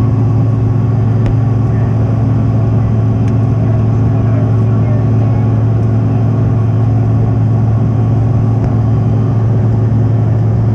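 Steady engine and airflow noise inside a jet airliner's cabin during the climb after takeoff: a strong low hum under an even rush, with no change in pitch or level.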